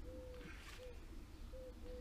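A dove cooing faintly: a short note, a long slightly falling coo, then a short note, the phrase repeating about a second and a half later.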